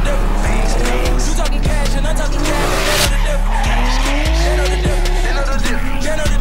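Drift car with a turbocharged 2JZ-GTE inline-six sliding sideways, tyres squealing and the engine note rising and falling. It sits under music with a heavy bass beat about every 0.6 seconds.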